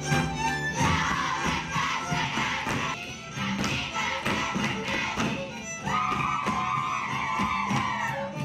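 Transylvanian Hungarian folk string band of fiddles, cello and double bass playing dance music, with the dancers' boots stamping and tapping on the stage boards in rhythm. A long high note is held from about six seconds in.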